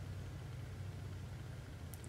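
Faint room tone: a steady low hum with a light hiss, no other events.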